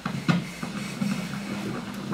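A steady low hum with a few light knocks and rustles of handling, the clearest right at the start and about a third of a second in.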